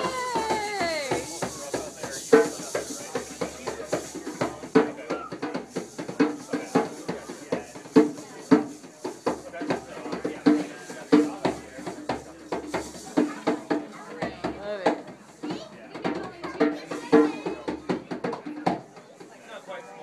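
A hand drum played with the hands in a steady, lively rhythm of sharp slaps and ringing tones that return to the same two pitches, with people talking behind it.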